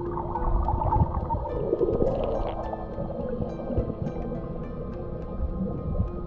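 Muffled underwater sound of pool water around a submerged camera: low rumbling and gurgling, with a swirl about two seconds in. Steady background music plays over it.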